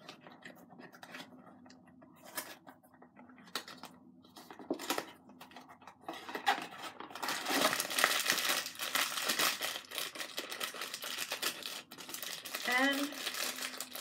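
Blind-box packaging being opened by hand: light clicks and rustling at first, then about six seconds of loud crinkling and tearing of the wrapper from about halfway through.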